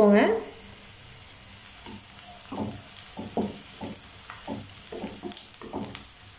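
Sliced onions and curry leaves sizzling in hot oil in a nonstick kadai, a steady high hiss. From about two seconds in, a wooden spatula stirs them, knocking and scraping against the pan.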